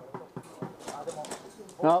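Mostly voices: faint distant talk with a few sharp clicks early on, then a man's loud "Nope" near the end.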